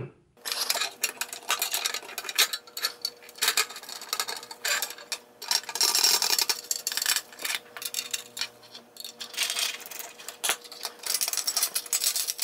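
Small metal clicks, clinks and scrapes as slip-joint pliers work standoffs and screws loose from a circuit board on a sheet-steel mounting plate, with parts rattling against the plate. A faint steady hum runs underneath.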